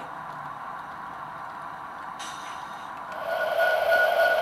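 Quiet room tone, then about three seconds in a steady hum with a thin high whine above it comes up and holds: the onboard sound of a Bachmann HO-scale model diesel locomotive running from its small speaker.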